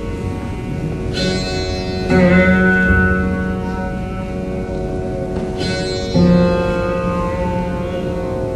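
Rudra veena playing a slow dhrupad alaap: a light stroke followed by a louder plucked low note about two seconds in, and the same again about six seconds in. Each note rings on for several seconds over a continuously sounding bed of string tones.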